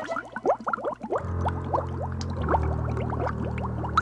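Cartoon underwater bubble sound effects: a stream of quick, rising bloops. A low steady drone joins about a second in and holds under them.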